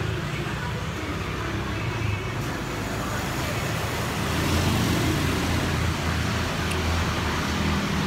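Road traffic: a motor vehicle's engine rumbling steadily as it passes, growing louder about halfway through.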